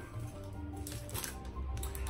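A cardboard LP jacket being handled and turned over, a dry rustle and brush of the sleeve, over quiet background music.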